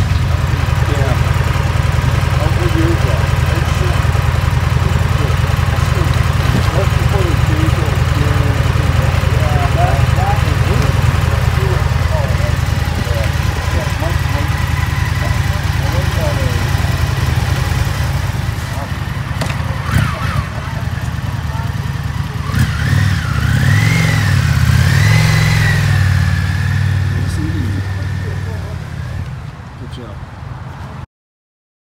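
A motorcycle engine idling steadily, then revving up and down a few times near the end before the sound fades out.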